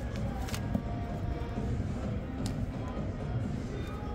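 Steady background din of slot machines with faint musical tones held over it, and a couple of soft clicks.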